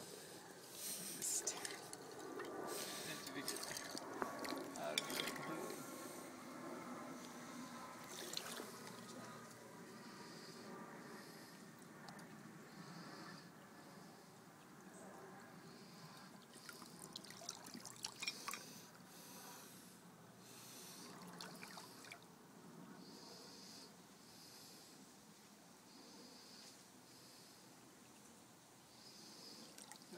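Shallow creek water trickling over gravel, with knocks and scrapes of gravel as someone wades and digs in the creek bed with a metal hand trowel. It is busiest in the first several seconds, then settles to a quieter trickle.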